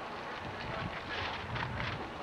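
Chevrolet Camaro's engine running as the car pulls away at low speed, its rumble growing about half a second in, with wind buffeting the microphone.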